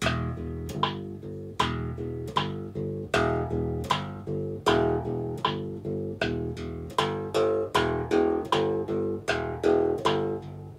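Hollow-body electric bass plucked fingerstyle with two alternating right-hand fingers, a steady run of eighth notes at about two and a half notes a second, each note a clear attack that rings briefly before the next.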